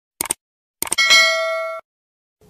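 Subscribe-button sound effect: two quick mouse clicks, then a few more clicks and a bell ding that rings for almost a second before cutting off.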